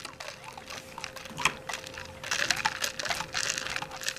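Plastic straw worked up and down through a plastic cup lid: a run of quick squeaky rubbing clicks, busier and louder from about halfway through.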